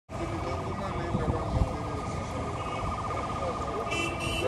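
Police siren wailing over people's voices and street noise, with a couple of low thumps about a second and a half in.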